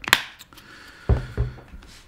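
A sharp plastic click as the flip cap of a squeeze ketchup bottle is snapped shut, then two dull thuds about a second later as the bottle is set down on the counter.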